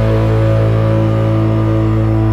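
Live band's amplified instruments holding one sustained chord, steady ringing tones with no drumbeat.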